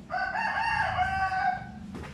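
A rooster crowing: one long crow of about a second and a half, wavering in pitch and dropping at the end.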